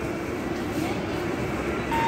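Steady rumble of a metro train running through the station, with no speech over it. A steady high hum starts near the end.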